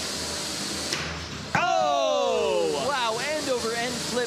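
A commentator's loud, drawn-out falling 'ooooh' breaks in about a second and a half in, followed by quick excited exclamations. Before it there is only low arena noise with a couple of short knocks.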